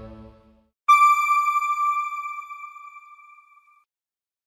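The closing music fades out, then a single electronic chime rings out about a second in and dies away over about three seconds: the news outlet's logo sting on its end card.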